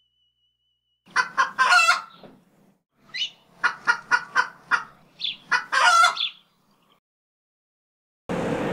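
A bird's calls: a few short sharp notes about a second in, then a longer drawn-out call. A quick run of short notes follows from about three seconds, and a second long call comes near six seconds.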